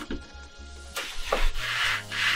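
Background film music with a steady low bass line. A plastic chair rubs and scrapes on a hard floor, briefly about a second in and for longer near the end.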